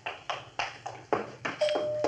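Footsteps walking at an even pace on a hard floor, about three steps a second, as a radio-drama sound effect. Near the end a steady single-pitched tone starts and holds.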